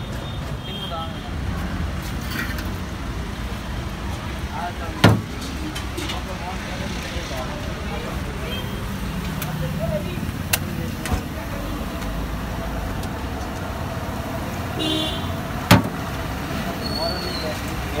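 Steady low rumble of a gas wok burner and the street around it, with two sharp metallic clacks, about five seconds in and again near the end, of a steel spatula striking the iron wok.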